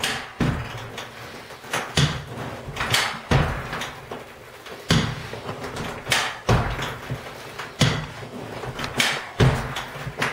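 Kneeless carpet stretcher being stroked along a wall, its head setting into the carpet and the lever driving it forward. Each stroke gives a clunk with a dull thud, about once a second, several in quick pairs.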